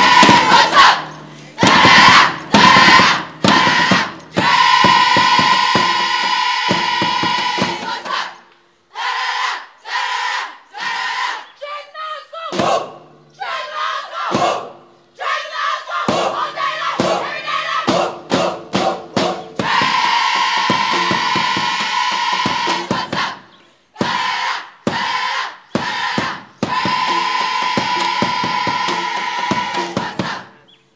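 A large group of schoolgirls chanting and shouting a school house war cry in unison. Clipped rhythmic shouts alternate with long held cries that each last a few seconds.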